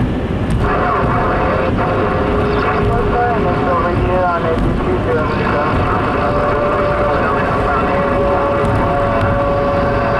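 Steady road and engine noise inside a car cabin at highway speed. Faint wavering tones and warbles sit over it, with a brief sliding cluster about four seconds in and a steady tone through the second half.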